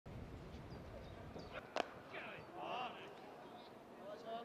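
A single sharp crack of a cricket bat striking the ball, about two seconds in, over faint open-field ambience; faint distant shouts follow.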